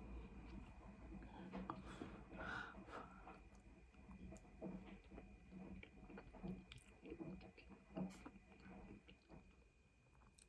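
Faint close-up chewing of a mouthful of chicken curry and rice: soft, wet mouth sounds and small clicks at an irregular pace.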